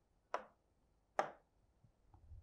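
Two sharp taps of a stylus on an interactive touchscreen display, about a second apart.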